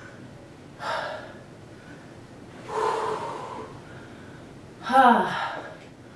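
A woman breathing hard after exercise: two loud breathy exhales, then a voiced sigh that falls in pitch near the end.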